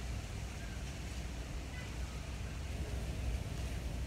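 Steady outdoor background noise: a low, even rumble with a faint hiss above it.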